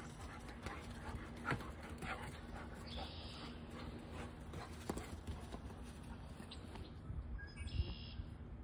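Two German shepherds playing rough: scuffling and scattered thumps as they run and wrestle on grass, with a few short sharp knocks.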